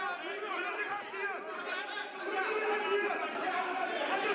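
Several men talking over one another at once in a meeting room, an unbroken tangle of voices in a heated dispute.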